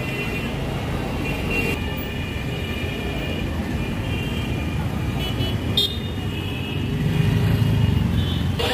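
Street traffic: vehicle engines running with horns honking several times in short toots, and a vehicle passing close near the end.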